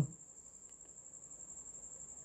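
Faint, steady high-pitched tone that runs on unbroken, with a few soft ticks about two-thirds of a second in.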